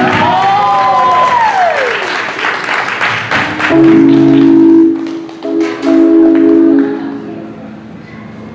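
Live amplified band ending a song: a long note swoops up and then slides down in pitch over about two seconds, followed by audience applause and cheering. Two separate sustained chords follow in the second half.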